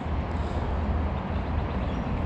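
Steady low rumble with an even hiss over it: outdoor background noise with no distinct events.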